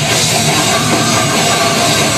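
Death metal band playing live: heavily distorted guitars and a drum kit with cymbals in a loud, dense, unbroken wall of sound.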